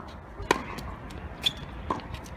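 Tennis ball being struck during a rally: a sharp pop of a racket hitting the ball about a quarter of the way in, the loudest, then two more hits or bounces about a second later and just before the end.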